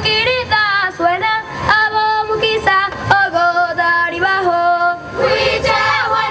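A choir of children's voices singing a melody in long held notes, with short sharp strokes of accompaniment behind them.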